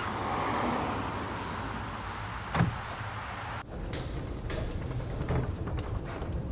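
Car and street ambience with a steady low rumble, broken by one sharp bang about two and a half seconds in; a little after, the background changes to a different steady room sound with a few faint clicks.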